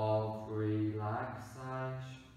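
A man's voice slowly drawing out a few words in a low, even, chant-like monotone, in the manner of a hypnotic induction. There are two long held stretches with a brief hiss between them about one and a half seconds in.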